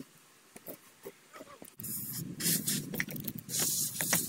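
Bricks being handled on a sheet-metal-topped table: quiet at first, then from about two seconds in a rough scraping with light knocks as a brick is slid and set down.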